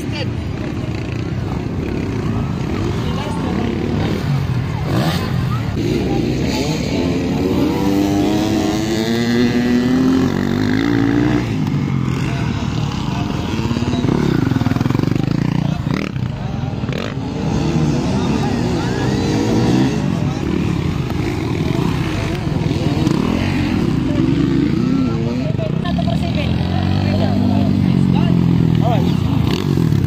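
Motocross dirt bikes racing, their engines revving up and falling back again and again as they pass, with voices over the top.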